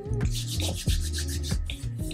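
A run of quick, evenly repeated rubbing strokes lasting a little over a second, over soft background music.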